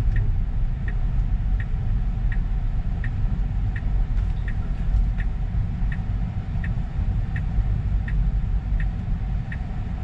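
Tesla Model 3 turn-signal indicator ticking inside the cabin, about one and a half ticks a second, stopping shortly before the end, over a low steady rumble of tyres on the road.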